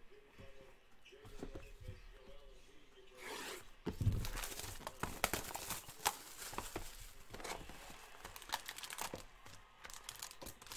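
A cardboard trading-card box being torn open, then foil card packs crinkling and rustling as they are pulled out and handled. It starts about three seconds in with a low thump, followed by a busy run of crackles and clicks.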